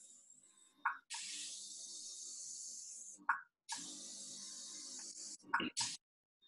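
Handheld airbrush blowing air alone, with no product in it, as a high hiss in spells of about two seconds. The hiss breaks off briefly about a second in and again about three seconds in, with a short click or knock in each gap.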